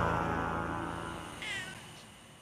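Music fading out, with a cat giving one short meow that falls in pitch about one and a half seconds in.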